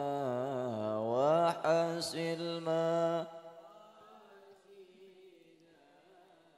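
A man chanting a long melismatic vocal phrase into a microphone, held notes wavering in pitch, sliding up about a second in and ending about three seconds in.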